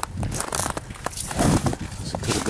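Footsteps crunching on snow, a few uneven steps with the loudest near the end.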